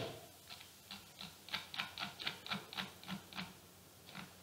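Computer mouse scroll wheel ticking as it is rolled: a dozen or so faint, quick clicks, about three to four a second, in an uneven run.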